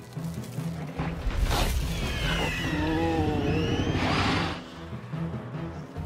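Dramatic cartoon background score with a low, pulsing beat and gliding tones. Two swelling rushes of noise come through it, one about a second and a half in and another about four seconds in.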